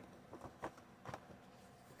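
Near silence, with a few faint, soft ticks from a hardcover book being handled as its dust jacket comes off.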